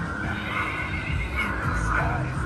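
Haunt background music from outdoor speakers, with a wavering high cry that resembles a horse's whinny.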